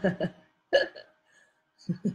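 A woman laughing in short bursts of quick pulses: one at the start, a brief one about a second in, and another near the end.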